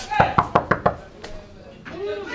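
Knuckles rapping on a door: about five quick knocks within the first second.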